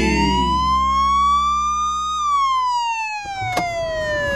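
Police car siren wailing: one tone rising for about two seconds, then falling slowly. A sharp click comes near the end.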